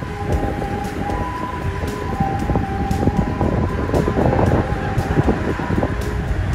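Steady engine and machinery rumble with a sustained high whine, with scattered small knocks.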